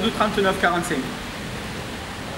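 A man speaking, his sentence trailing off about halfway through, then a steady even hiss of background noise.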